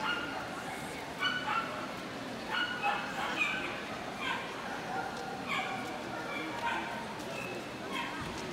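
Small dogs yipping in a string of short, high-pitched calls, over a background murmur of voices.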